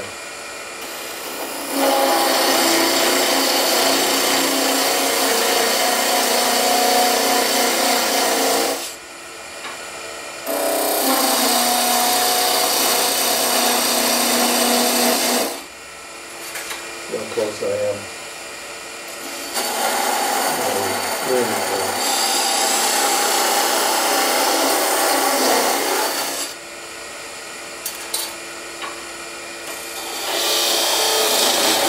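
Parting tool cutting grooves into a spinning wooden blank on a Laguna wood lathe, making the first parting cuts between the rings. Three long cuts of about five to seven seconds each, with the lathe running quieter in between.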